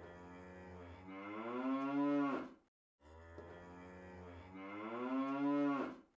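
A cow-moo sound effect played twice, the same each time: a long low call that rises in pitch and grows louder, then cuts off, with a short gap about two and a half seconds in.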